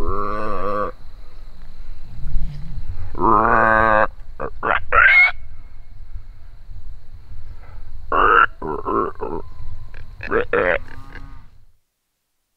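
A mouth-blown game call sounded in a series of drawn-out, wavering notes, some sweeping sharply upward in pitch, with pauses between them. A low rumble of wind or handling noise runs underneath, and the sound cuts off shortly before the end.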